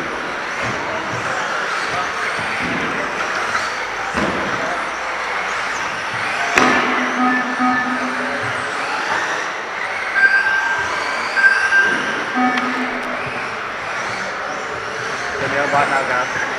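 Electric radio-controlled racing cars running laps, their motors whining and rising and falling in pitch as they speed up and slow down, with a few knocks along the way.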